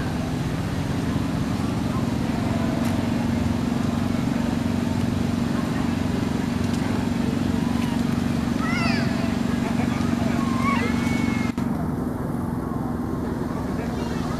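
A small engine runs steadily with a constant low hum. A few short, high squeaky chirps come about two-thirds of the way through.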